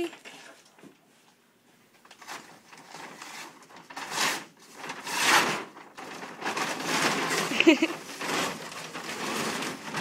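Crinkling and rustling of a grand piano's protective paper cover, lined with foil, as it is pulled off: two short bursts about four and five seconds in, then a longer stretch of rustling, with a brief laugh near the end.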